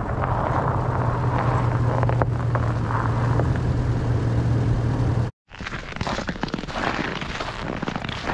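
Pickup truck engine running with a steady low hum as the truck rolls slowly past close by over packed snow. About five seconds in the sound cuts off abruptly and gives way to irregular crunching of boot footsteps on snow.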